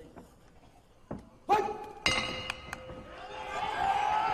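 Ring bell struck twice, about a second and a half and two seconds in, each strike ringing on, signalling the start of the bout. Crowd noise and shouts rise near the end.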